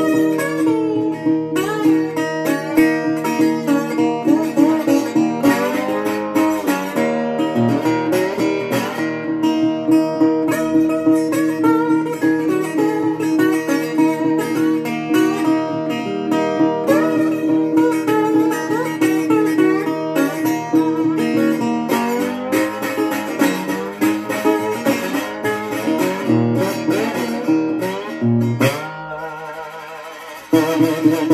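Gretsch Honey Dipper metal-body resonator guitar played bottleneck style with a slide, fingerpicked blues: plucked notes that glide in pitch over a steadily repeated bass note. The playing grows quieter in the last couple of seconds.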